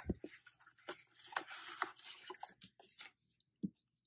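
Faint handling of cardstock: a click at the start, then light ticks and a soft papery slide as a folded card is drawn out of a paper card box, with a small bump near the end as it is set down on the table.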